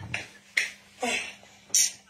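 Four short, sharp snapping sounds, about half a second apart.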